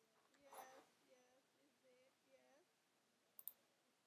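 Near silence with very faint, far-off speech and a few faint clicks: one about half a second in and two close together near the end.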